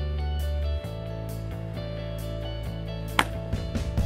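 Background music with sustained tones, and one sharp pop about three seconds in: a fastball softball pitch smacking into the catcher's mitt.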